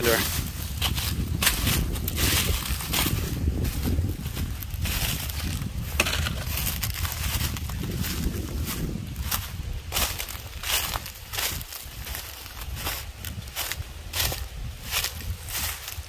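Footsteps crunching and crackling through dry, cut corn stalks and stubble. Under them a low engine rumble from a nearby John Deere combine, which fades out about halfway through.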